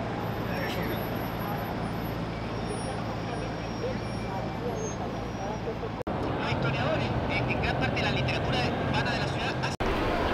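City street ambience with a city bus engine running close by and traffic passing. About six seconds in it changes to a crowd of people talking and moving about in an open square.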